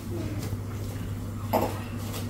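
A single short cough about one and a half seconds in, over a steady low hum.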